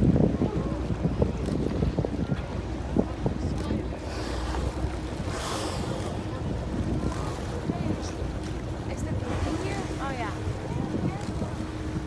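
Wind buffeting the microphone on the deck of a whale-watch boat, over the boat's steady engine hum and the wash of the sea. About five and a half seconds in comes a brief rushing hiss.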